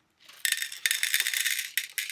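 Small hard candies poured from a little bag into a plastic heart-shaped trinket case, rattling as they land for about a second and a half, starting about half a second in.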